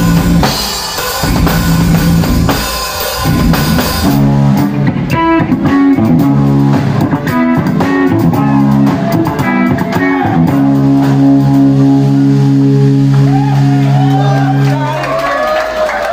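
Live rock band with drum kit and electric guitars playing the end of a song: drums and guitars together, then the drums stop about four seconds in and the guitars ring out on held chords. A last long chord sustains and dies away near the end, as voices come in.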